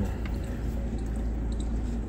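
Steady low rumble of a car, heard from inside the cabin, with a few faint ticks.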